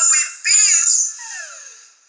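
A high voice singing, played back through a small computer speaker, so it sounds thin and has no bass. About a second in, the voice slides downward, and then it fades away.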